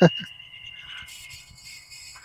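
Steady high-pitched whine of a wau bulan kite's hummer bow vibrating in the wind, fading out about a second in. A brief voice burst at the very start is the loudest thing.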